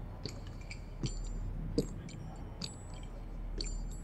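Low steady hum with scattered small clicks and ticks, about five of them, some with a brief high metallic ring; the loudest comes a little before the middle.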